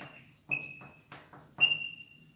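Chalk writing on a blackboard: taps and scratches of the chalk, with two short high-pitched squeaks, one about half a second in and one near the end.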